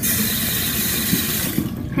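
Tap water running into a sink for hand washing; it starts suddenly and stops just before the end.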